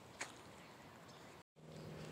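Near silence: faint outdoor background with one soft tick, and the sound drops out entirely for a moment about one and a half seconds in.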